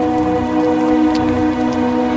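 Heavy rain pattering on pavement, a steady hiss, under held notes of background music.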